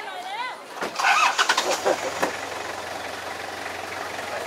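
People talking, then a vehicle engine starting about a second in and running on at a steady idle.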